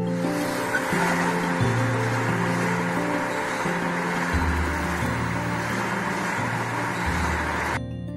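Music with a stepping bass line under a steady rush of car road and tyre noise, which cuts off suddenly near the end.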